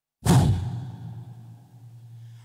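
A man's sudden forceful blast into a microphone, heard over a hall PA system. It starts about a quarter-second in and dies away in the hall's echo over about a second and a half, leaving a low hum.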